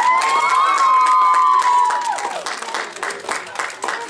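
An audience of children clapping, with one long, high-pitched cheer held for about two seconds at the start before it falls away; the clapping carries on.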